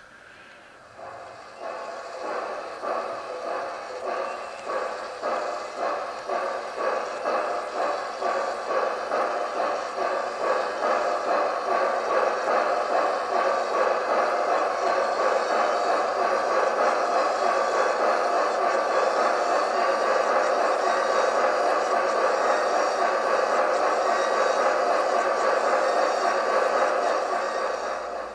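Synthesized steam-engine chuffing from a Quantum Titan model-railroad sound decoder, played through the steamboat model's small onboard speakers. It starts about a second in as separate chuffs that quicken until they run together into a steady rush, then stops just before the end.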